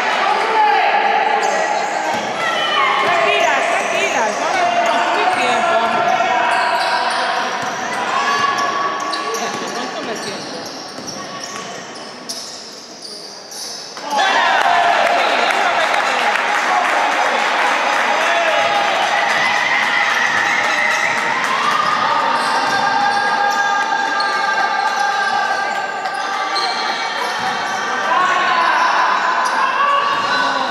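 Basketball game in an echoing sports hall: a ball bouncing on the wooden court amid players' calls and voices. The sound fades somewhat for a few seconds and then jumps back up abruptly about halfway through.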